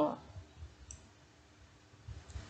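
The end of a woman's spoken word, then near silence: low room tone with a faint click about a second in.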